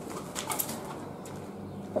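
Pigeons inside the building, with a short burst of rustling, wing-like flutter about half a second in. A steady low hum runs underneath.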